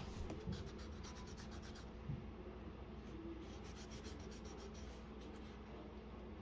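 A pencil's rubber eraser rubbing back and forth on drawing paper, faintly, in a few quick runs of strokes with pauses between them.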